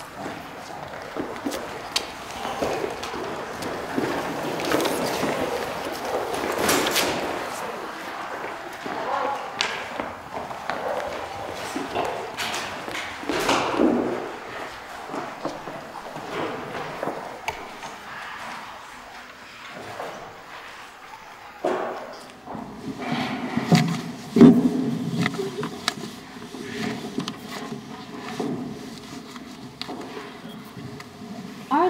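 Stage scene change: scattered knocks and thumps of school desks, chairs and set pieces being moved and footsteps on a wooden floor, with some low voices.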